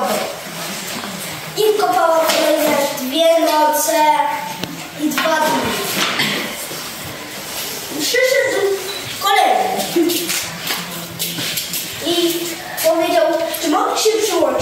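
Children's voices speaking in short phrases with pauses between them.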